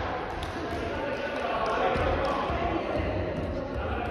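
Reverberant gymnasium sound between volleyball rallies: players' voices, with scattered short knocks of a volleyball bouncing on the wooden floor.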